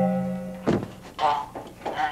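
A sustained music drone fades out, then a single sharp thunk sounds a little over half a second in, followed by two short vocal sounds from a person.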